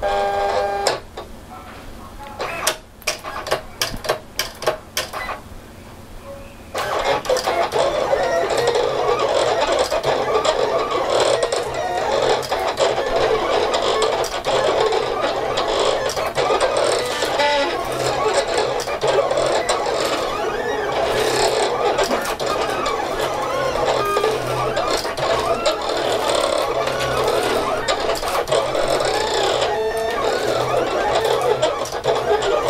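Silhouette Cameo 4 vinyl cutter starting a cut in heat-transfer vinyl: a short beep, a few clicks as it positions, then from about seven seconds in a steady motor whir whose pitch keeps shifting as the carriage and rollers drive the blade back and forth.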